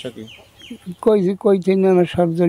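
A man's voice rising and then held in long, drawn-out tones from about halfway through, after a quieter stretch with a few faint, short, high falling chirps.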